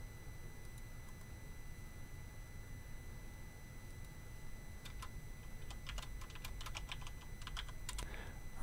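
Scattered computer keyboard clicks, a quick run of keystrokes in the second half, over a faint steady low hum.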